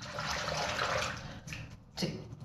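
Bathroom tap running into the sink for about a second and a half, then shut off.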